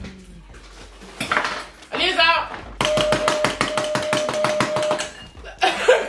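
A tabletop game buzzer sounds for about two seconds, a rapid rattling pulse over one steady tone, as a contestant taps out of the challenge. Just before it, a person's voice wavers briefly.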